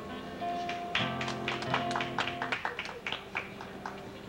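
Solo acoustic guitar picking a run of single notes, each one ringing out after it is plucked.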